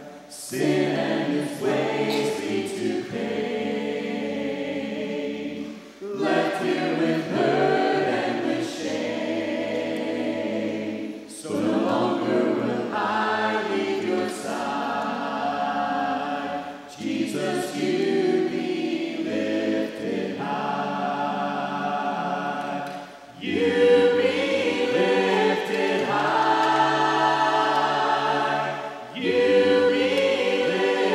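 Mixed men's and women's voices singing a hymn a cappella, phrase by phrase, with a brief breath break about every five to six seconds.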